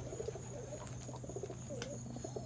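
Domestic pigeons cooing softly, low rising-and-falling coos.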